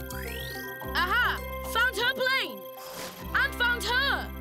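Cartoon soundtrack: background music with a rising electronic zoom sound at the start, then several short, wobbly, voice-like calls and a brief whoosh about three seconds in.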